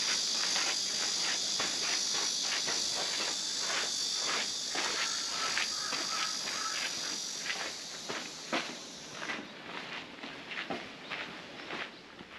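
Footsteps on a sandy dirt path, a steady walking rhythm of a few steps a second, over a continuous high-pitched insect drone that fades away about three-quarters of the way through.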